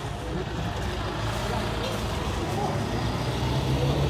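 A small route bus's engine pulling away at low speed. Its low note climbs a little in pitch and grows louder near the end as the bus accelerates away.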